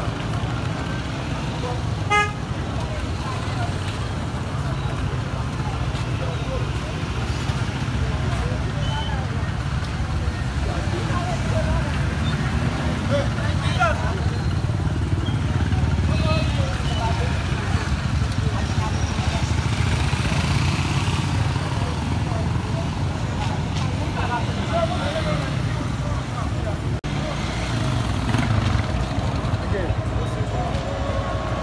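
Busy street: people talking over the steady rumble of motorcycles and other traffic, with a short vehicle horn toot about two seconds in.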